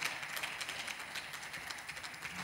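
Applause from a small group of people: quick, irregular hand claps that blend into a steady patter.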